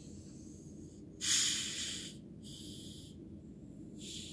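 Two short hisses of gas escaping as the screw cap of a plastic bottle of sparkling water is twisted open: one about a second in, then a shorter, higher one a second later.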